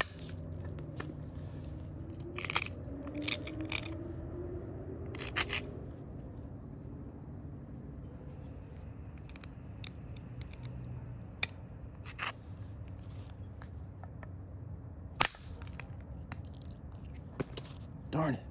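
Flintknapping on a rhyolite biface: intermittent scraping and clicking of stone on stone as the edge is abraded with a hammerstone, with a sharp crack about fifteen seconds in.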